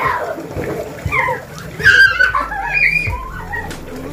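Young children squealing and shrieking excitedly as they play, high voices rising and falling, loudest about two seconds in, with splashing noise underneath.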